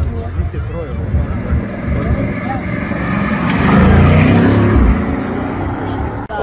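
Bugatti Chiron's W16 engine accelerating away, swelling to its loudest about four seconds in and then fading, over the voices of a crowd of onlookers.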